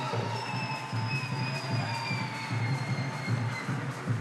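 Live Kumina music: drums beating a steady pulse, with one long high tone sliding slowly down over the drumming.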